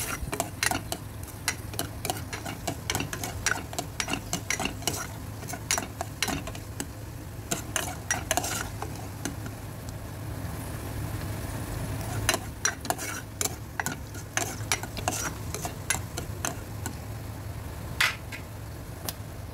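Chopped onions and garlic sizzling as they fry in oil in a pot, stirred with a spatula that clicks and scrapes against the pot again and again. The stirring thins out briefly about halfway through, then picks up again.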